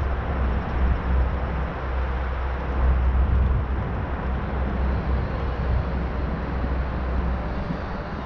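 Wind rumbling and buffeting on the microphone of a camera on a moving bicycle, over a steady rush of tyres rolling on an asphalt path.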